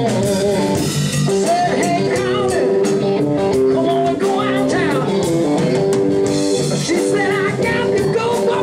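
Live band music: electric guitar, bass and drum kit playing a blues-rock song, with a man singing lead.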